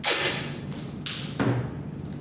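Adhesive tape pulled off the roll with a loud rip, then a second, shorter rip about a second in, followed by a dull knock.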